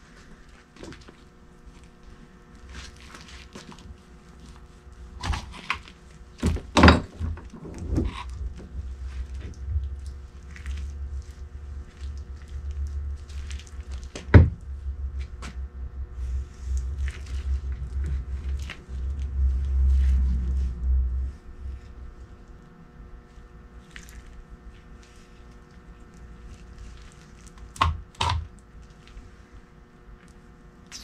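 Workbench handling noises as grease-covered gloved hands work a new rubber CV axle boot onto the axle: scattered knocks and thuds, the sharpest a little before the middle, with a low rumbling stretch through the middle and a faint steady hum underneath.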